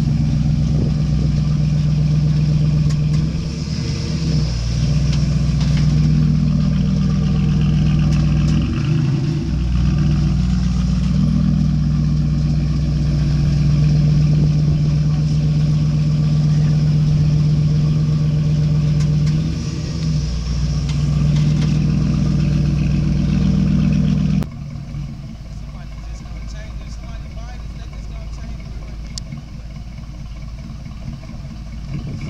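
1988 Chevrolet Caprice Classic's V8 running without catalytic converters, a loud, steady low exhaust drone with a few brief dips as the car moves slowly. The engine sound cuts off suddenly near the end.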